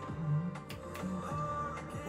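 Azerbaijani pop song playing, its beat coming in under a male singer's voice.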